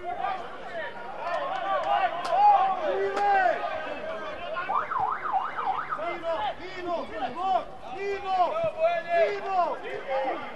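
Several voices calling and shouting across a football pitch during play, overlapping short calls, with a quick up-and-down wavering call a little before the middle.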